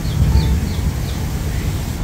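Wind rumbling on the microphone, with a few short, high bird chirps in the first half.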